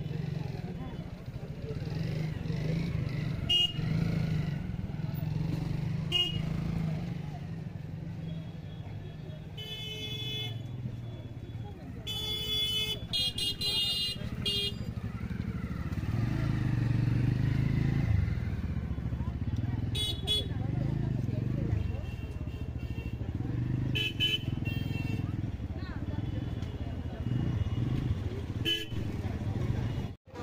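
Busy street-market traffic: scooter and motorbike engines running at low speed under a murmur of crowd voices, with vehicle horns honking several times, the longest run of honks about halfway through.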